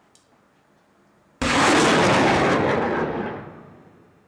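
A 107mm rocket launching: a sudden blast of rocket-motor noise about a second and a half in, holding loud for about two seconds and then fading away.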